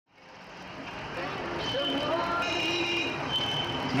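City street ambience fading in over the first second or so: steady traffic noise with voices mixed in and a few faint, steady high tones.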